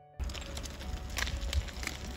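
Wind rumbling on the microphone outdoors, with a few scattered sharp clattering clicks. Soft background music cuts off just after the start.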